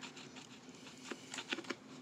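Faint, irregular scratchy strokes of a red crayon colouring in a heart on a paper colouring-book page, coming quicker in the second half.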